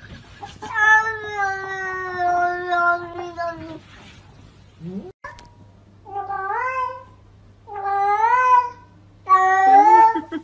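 A domestic cat yowling: one long drawn-out meow of about three seconds, slowly falling in pitch, then, after a pause, three shorter meows that rise and fall.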